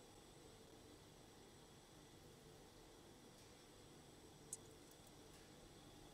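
Near silence: faint room tone, with one brief faint click about four and a half seconds in.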